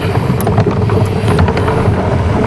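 A boat engine running with a steady low drone.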